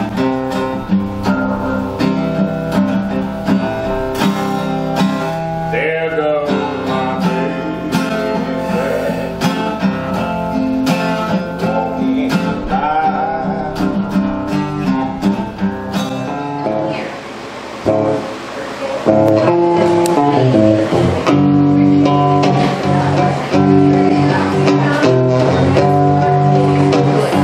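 Blues played on guitar, plucked and strummed, with a man's voice singing along in places. About three-quarters of the way through the music jumps louder into a different guitar passage.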